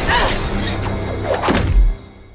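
Action-film trailer soundtrack: music and sound effects with falling sweeps, then a heavy, low thud of an impact near the end, after which the sound drops away abruptly.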